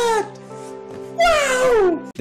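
A man's long, drawn-out exclamation of "wooow", sliding down in pitch, heard twice: the first dies away just after the start and the second begins a little past a second in. Steady background music runs underneath.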